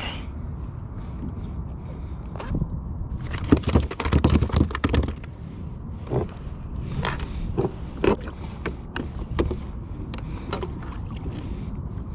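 Scrapes, knocks and clicks of hands unhooking a porgy and handling the fish and its jig against a plastic fishing kayak, over a steady low rumble of wind and water. The busiest scraping comes in a burst about three and a half to five seconds in, then single clicks follow.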